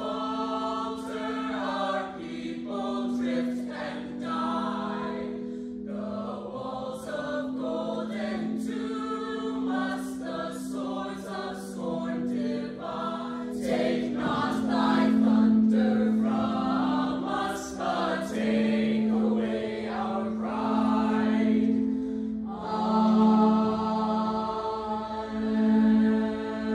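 Music: a group of voices singing together in chorus over a held low drone note that steps between pitches.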